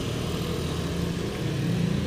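Small motorcycle engine running steadily, a low even hum that grows a little louder near the end.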